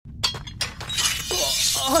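Anime sound effect of a sword being drawn from its sheath: two sharp metallic clicks, then a long bright ringing scrape of the blade, over background music.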